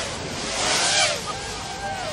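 Snowboard riding across the halfpipe wall: a hissing scrape of the board's edge on snow that builds to about a second in, then fades.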